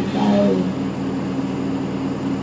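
Steady hum of an Isuzu Erga Mio city bus's diesel engine idling, heard from inside the passenger cabin, at an even pitch.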